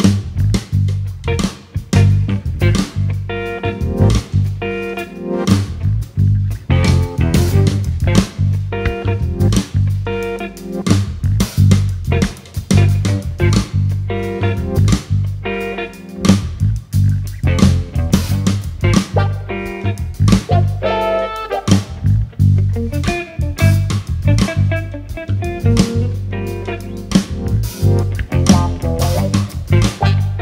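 Live jazz-fusion band playing, with electric guitar to the fore over bass guitar and a drum kit.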